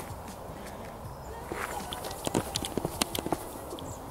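Footsteps on an outdoor path: a quick run of sharp clicks and taps from about two seconds in, over faint steady outdoor background noise.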